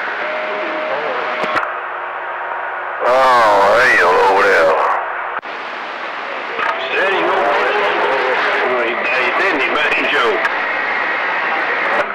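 CB radio receiver on channel 28 picking up distant skip: garbled, unintelligible voices breaking through static hiss, with steady whistle tones underneath. A stronger transmission cuts in loud about three seconds in and drops out briefly a couple of seconds later.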